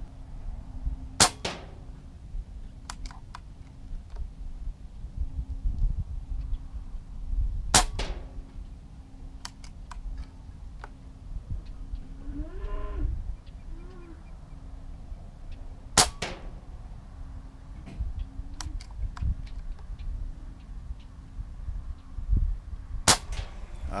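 Benjamin Marauder PCP air rifle fired four times, several seconds apart, each shot a sharp crack, as a group is shot at a target about 35 yards away to check the rifle's zero. Fainter clicks come between the shots.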